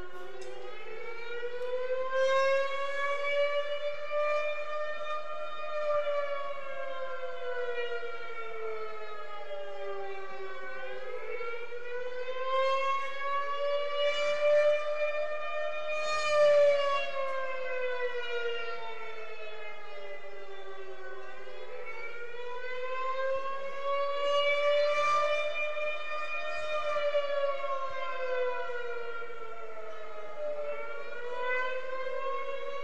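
Air-raid-style siren wailing, its pitch rising and falling slowly in cycles of about ten seconds. A few faint low thumps sound under it near the middle and toward the end.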